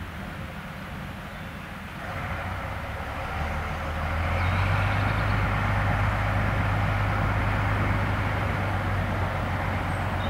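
Small diesel shunting locomotive's engine running, revving up about two seconds in and then holding a steady, louder low drone, as it works the attached DMU car.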